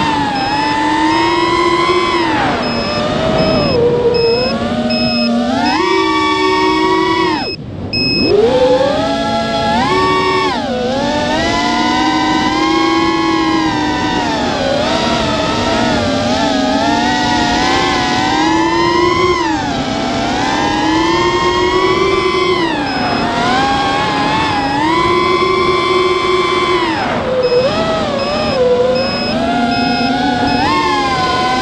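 Brushless motors and propellers of a QAV210 racing quadcopter (DYS 2205 motors) whining, the pitch rising and falling constantly with throttle. The whine drops out briefly about eight seconds in, as on a throttle chop. A faint steady beeping runs in the first seven seconds and again near the end.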